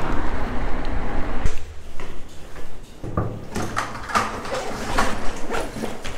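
Wind and road noise from riding an electric bike, which cuts off about a second and a half in; then a series of sharp clicks and knocks, a door and a delivery backpack being handled.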